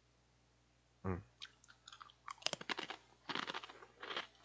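Close-miked chewing of a crunchy snack: a run of irregular crunches that comes thicker in the last second and a half.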